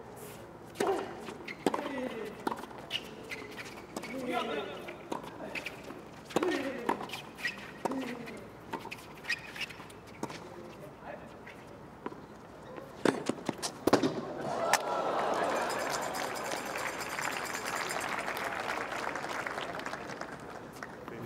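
Tennis doubles rally: racquets striking the ball about once a second, with a few short voices between shots, then the crowd applauds from about fourteen seconds in after the point is won.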